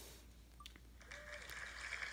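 Mostly near silence, with a single faint, short electronic beep about a second in and a faint hiss after it.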